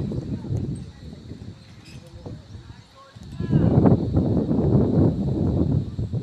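Wind buffeting the microphone in a rough, gusting rumble that eases off in the middle and comes back louder about three seconds in, with a voice calling out as it returns.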